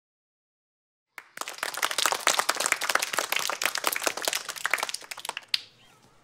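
A group of children clapping together, starting abruptly about a second in and fading out near the end.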